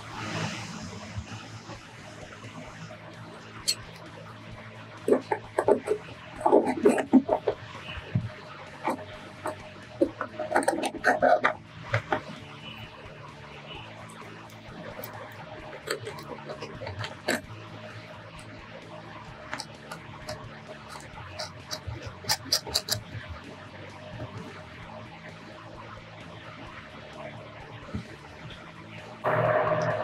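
Faint background music under scattered clicks and knocks of a metal pipe clamp, nut and bolt being fitted by hand to a Unistrut channel, with a few louder clatters in the first twelve seconds.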